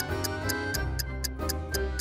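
Countdown music: a steady ticking, about four ticks a second, over a low bass and held chords, timing the seconds given to answer a quiz question.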